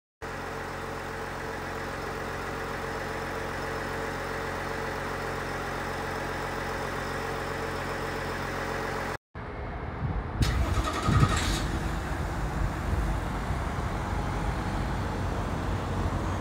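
GM 3.0L Duramax inline-six turbodiesel running steadily with its PPE turbo resonator deleted, an even drone with steady tones. About nine seconds in the sound cuts to the truck heard from behind, rougher and noisier, with a brief louder burst a second or so later before settling back to a steady run.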